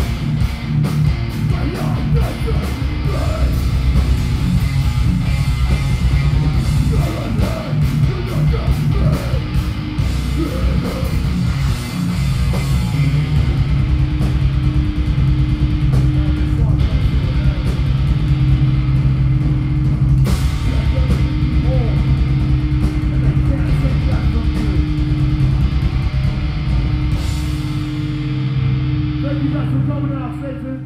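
Metal band playing live, with distorted electric guitars, bass and fast drumming. About halfway through the drumming thins out under a held low chord that rings on, and the music dies away at the very end.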